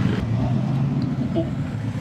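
Steady low rumble of a car engine and road traffic.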